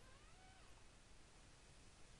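Near silence: faint room hiss, with one faint, brief cry that rises and falls in pitch in the first half second or so.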